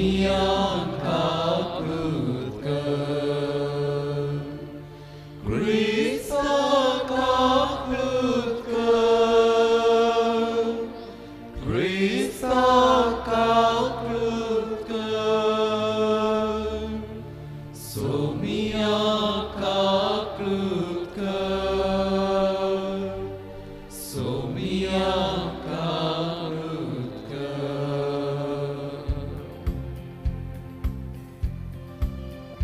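Liturgical chant sung during Mass, in phrases that begin about every six seconds, over steady low notes from an accompanying instrument.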